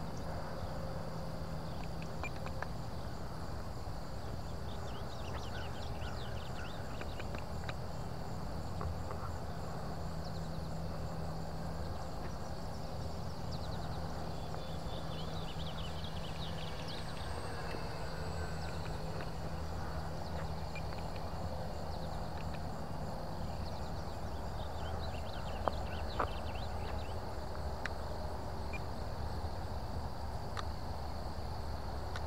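Steady outdoor field ambience: insects droning at a high, even pitch over a low steady hum, with faint short high chirps and two small clicks near the end.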